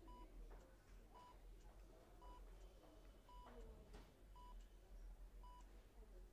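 Faint hospital patient-monitor beeping: a short, identical electronic beep at one steady pitch, repeating about once a second.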